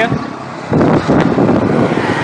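Wind buffeting the microphone, with road rush, while riding a Yadea Ocean electric scooter; the scooter's motor is so quiet that it is barely heard. The rush swells louder and rougher about two-thirds of a second in.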